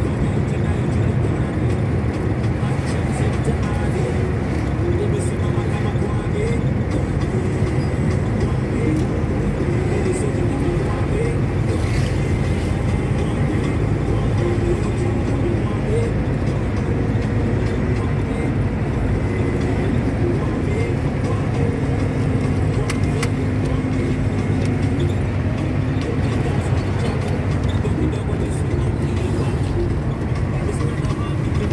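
Steady low road and engine rumble heard from inside a moving car, with voices talking over it.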